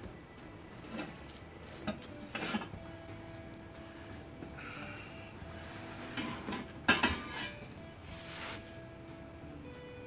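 Cardboard box flaps rubbing and scraping as a metal 4-inch exhaust pipe bend is slid out of its tall box, with scattered knocks. About seven seconds in the pipe gives a sharp metallic clink that rings briefly.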